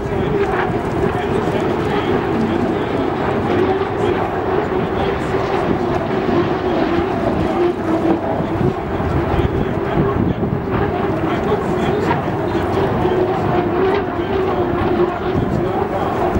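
Turbine engines of several H1 Unlimited hydroplanes running on open water, a steady drone that holds one pitch, with wind noise on the microphone.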